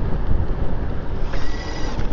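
Wind buffeting the microphone on a moving e-bike, with a steady high-pitched whine from the CYC X1 Stealth 72-volt mid-drive motor coming in about a second and a half in as it pulls hard in its highest assist mode.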